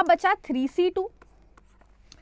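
A woman speaks for about a second, then a pen scratches faintly as it writes on a digital pen tablet.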